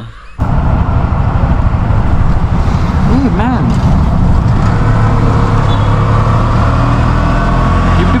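Auto-rickshaw (tuk-tuk) engine running while the vehicle drives, heard from inside its open cab as a loud, steady drone mixed with road noise. It starts abruptly about half a second in.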